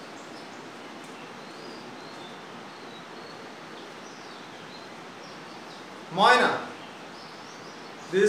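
Steady room noise with faint, high chirping of small birds. A man's voice says one short word about six seconds in.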